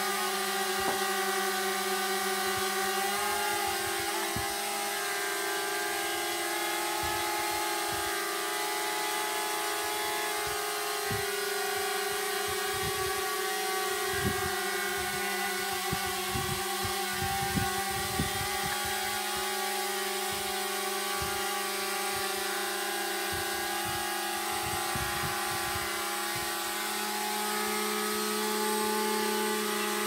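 DJI Mavic Mini quadcopter's propellers whining steadily in flight, several pitches at once that shift slightly as it manoeuvres, with scattered low thuds. The whine gets a little louder near the end.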